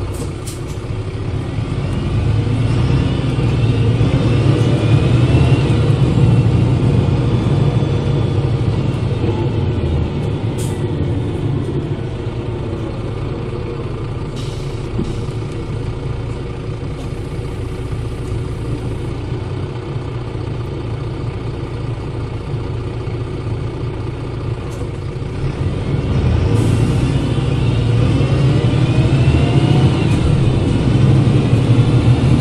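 Mercedes-Benz OM906 LA inline-six turbodiesel of a 2003 Citaro city bus driving through its ZF 5HP 502 C automatic gearbox, heard from near the engine. It gets louder as the bus accelerates over the first few seconds, runs steadier and quieter through the middle, and builds again near the end. A high whine from the rear axle differential rises with road speed during each pull, and a few short clicks and hisses come in between.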